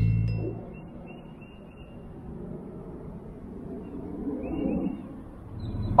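The end of a channel intro, music with a car sound underneath, fading out within the first second, then a faint low background.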